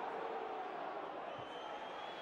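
Steady crowd noise from a football stadium: an even murmur from the stands with no distinct cheer or shout.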